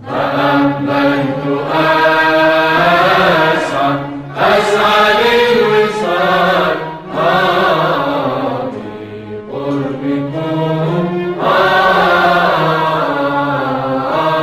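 Tunisian nawba (malouf) music: a sung melodic line with sliding, ornamented pitch over a steady lower tone. It comes in phrases with short breaks about four, seven and nine and a half seconds in.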